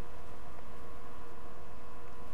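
Steady, even hiss with a faint steady hum beneath it, and no distinct events.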